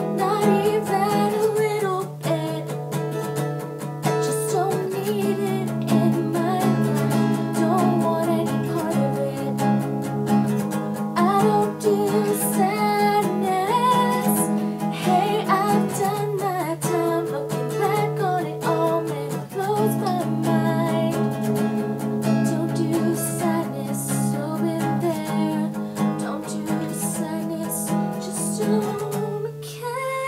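A woman singing to her own strummed acoustic guitar, an Epiphone Hummingbird.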